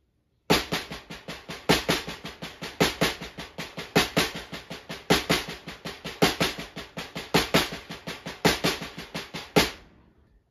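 Six-stroke roll played with drumsticks on a snare drum: two accented single strokes followed by two double strokes (R L rr ll), repeated evenly in a steady cycle. A louder accented stroke comes about once a second. It starts about half a second in and stops just before the end.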